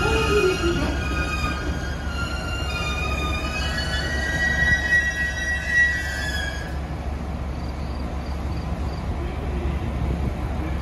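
JR Kyushu 787 series express train braking to a stop: several high squealing tones from the wheels and brakes, over a steady low rumble. The squeal is strongest about four to six seconds in and cuts off suddenly near seven seconds, when the train halts.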